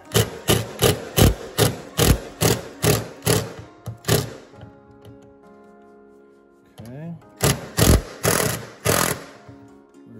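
Milwaukee impact driver hammering a freezer door hinge bolt loose in a quick run of short trigger bursts, about two or three a second for four seconds, then a few more bursts near the end.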